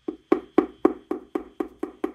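Gloved fingertips tapping on the metal housing of a VOPLLS smart projector: about nine evenly spaced knocks, roughly four a second, each with a short ring.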